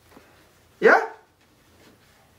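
A single short vocal exclamation, falling in pitch, just under a second in; otherwise only low room tone.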